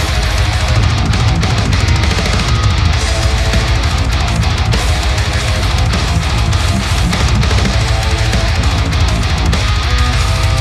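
Heavy metal song playing: quad-tracked, heavily distorted rhythm guitars run through the Neural DSP Fortin Nameless amp simulator, with drum kit and bass, lightly mix-processed.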